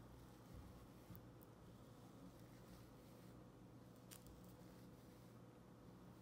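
Near silence: faint room tone with a steady low hum and a few faint ticks.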